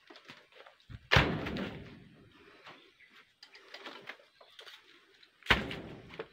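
Two heavy thuds, the first about a second in and the second near the end, each dying away over a moment, with only faint scattered sounds between them.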